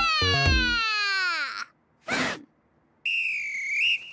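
A long falling wail that slides down in pitch over about a second and a half, a short whoosh about two seconds in, then a coach's whistle blown in one blast of about a second near the end.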